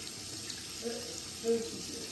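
Bathroom sink tap running steadily while a face is washed and rinsed by hand. A faint voice sounds twice in the background.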